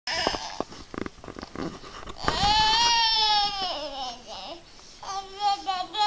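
A baby babbling: a few short sounds and knocks, then one long high-pitched squeal at about two seconds in that drops away at its end, and a run of quick babbled syllables near the end.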